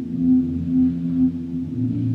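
Slow, sustained low electric guitar notes ringing and overlapping into a drone-like haze, swelling in loudness a few times. A lower note comes in near the end.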